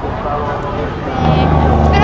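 Street traffic with a motor vehicle's engine running close by. Its low, steady hum grows louder about a second in.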